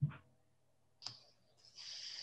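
A knock right at the start, a sharp click about a second in, then a brief hiss near the end, all faint and heard over a video-call microphone.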